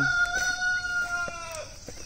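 Rooster crowing: one long, level held note that trails off and ends about one and a half seconds in.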